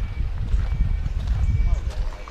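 Low, irregular thumping and rumble from a handheld camera being carried on foot: handling and footfall noise on its microphone.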